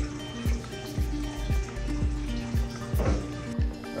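Background music: sustained chords over a steady beat of deep, falling bass hits about twice a second.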